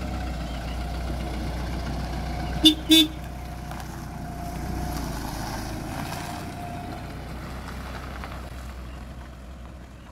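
A Ford pickup truck's engine running as it pulls away, with two short toots of the horn about three seconds in; the engine sound fades a little near the end as the truck moves off.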